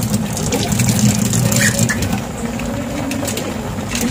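Pan of pork adobo simmering on a stove: a steady low rumble with scattered small pops and clicks.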